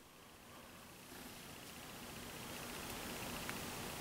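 Faint steady hiss of room tone, slowly growing louder, with a single tiny click about three and a half seconds in.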